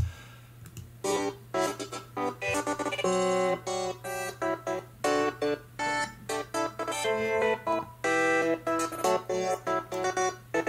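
Playback of a glitch-style electronic track: chopped, stuttering synth notes cut into short fragments, some passed through subtle chorus, ring-shifter, bit-crusher and delay effects. The music starts about a second in.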